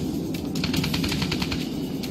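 Rapid burst of machine-gun fire, a quick train of sharp shots lasting about a second, over a steady background music bed.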